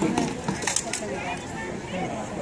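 A quick run of sharp knocks, clustered in the first second, as a mock katana and a spear clash against a round shield and each other in a close sparring exchange. Voices are heard underneath.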